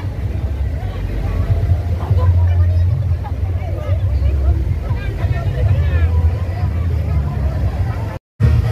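A deep, steady bass rumble from a carnival sound system, with a crowd of voices talking and calling over it.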